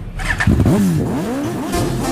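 Motorcycle engine revved up and down a few times, its pitch swooping, as a sound effect in a pause of the song.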